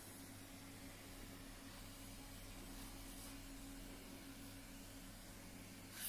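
Very quiet room tone with a low steady hum. A hand-held pressure sprayer's wand gives faint short hisses of spotting chemical onto the carpet stain, about two to three seconds in and once more at the very end.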